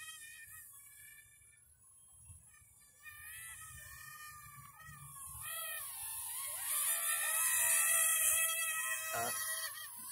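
Sharper Image LED stunt drone, a small toy quadcopter, flying with its motors whining together. Their pitch wavers up and down as the throttle changes, and the whine grows louder over the second half as the drone comes closer.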